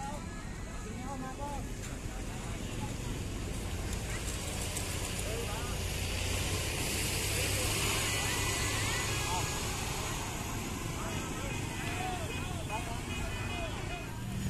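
Tour bus diesel engine running close by, a steady low rumble that grows louder towards the middle and then eases a little. Scattered voices of a crowd are heard around it.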